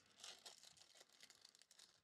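Faint rustling and crinkling of trading cards and plastic being handled and flipped through in the hands, with small scattered ticks.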